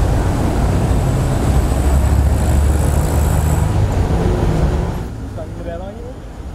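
A motor vehicle passing close by in street traffic, a loud steady low engine rumble that drops away about five seconds in.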